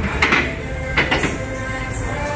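Two short bursts of metallic clanking about a second apart from a plate-loaded leg press as the sled is racked at the end of a set, over steady background music.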